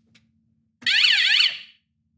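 Short electronic alarm from a prop lie detector: a shrill warbling tone that sweeps rapidly up and down in pitch, sounding once for under a second about a second in.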